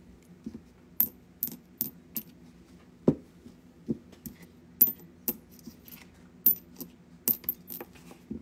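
A small shard tapped against a yellow-green glassy stone sold as an 'angel chime', giving about a dozen sharp, glassy clinks at irregular intervals, several of them ringing briefly. The piece is called an angel chime because it sings when struck. A faint steady hum lies underneath.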